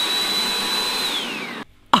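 Compact electric food chopper grinding cooked roast beef: the motor runs with a steady high whine, and about a second in it is released and spins down, its whine falling away to a stop.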